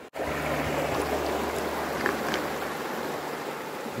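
Mountain stream running, a steady rush of water with no let-up.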